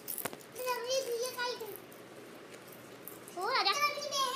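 Children's voices: a boy's short calls about half a second in and again near the end, with a couple of brief clicks right at the start.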